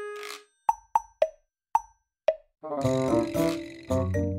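Dopey, laid-back background music. A held note fades out, then five short pitched pops come at uneven spacing over the next two seconds, and the full tune with bass and chords comes back in just past the halfway point.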